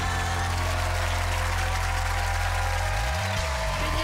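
Television show theme music: a steady held chord over a sustained bass note, with a brief swoop in the bass near the end.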